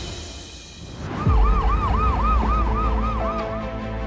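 A low boom about a second in, then an emergency-vehicle siren in a fast rise-and-fall wail, about three cycles a second, for roughly two and a half seconds before it stops.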